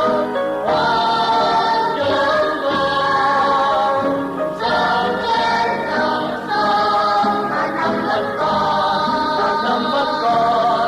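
A choir singing a song in Vietnamese with musical backing, in long held phrases.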